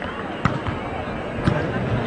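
Arena crowd murmur at a volleyball match, with two sharp thuds of the ball about a second apart.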